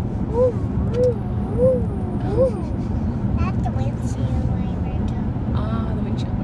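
Steady road and engine noise inside a moving car's cabin, with four short squeaks that rise and fall in pitch, evenly spaced, in the first half: a little squeak that sounds like a bird.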